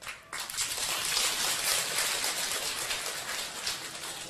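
Audience applauding: dense clapping that starts abruptly just after the start and thins out near the end.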